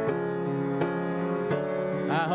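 Piano accompaniment playing held chords, a new chord struck about every three-quarters of a second.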